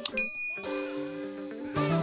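A mouse-click sound effect and a bright notification-bell ding right at the start, its ring fading over the next fraction of a second. Background music runs under it, and a brief rush of noise, like a swoosh, comes near the end.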